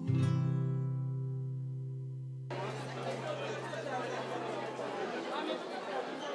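The last chord of the instrumental music rings on and fades; about two and a half seconds in it gives way abruptly to the chatter of many people talking at once in a large hall.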